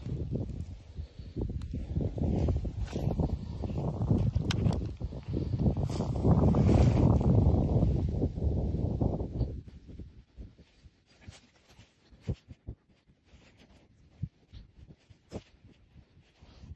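Wind buffeting the microphone in gusts for about the first nine seconds, then much quieter, with scattered light clicks and ticks.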